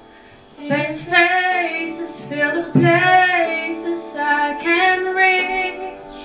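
A woman singing a song solo into a microphone, starting about a second in and carrying several phrases with vibrato on the long held notes, over a quieter steady accompaniment.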